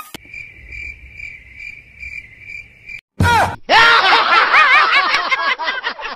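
Crickets chirping: a steady high trill pulsing about twice a second for about three seconds, the kind used as an 'awkward silence' gag in meme edits. It cuts off, and after a brief silence a loud, busy burst of high warbling sound takes over.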